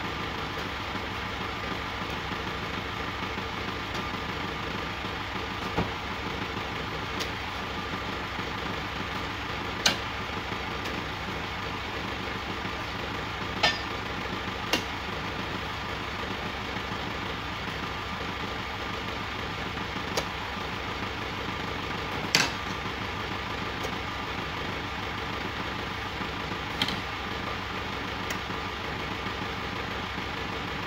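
A truck engine idling steadily, with about eight sharp knocks at irregular intervals as oil palm fruit bunches are thrown up into the truck's wooden bed.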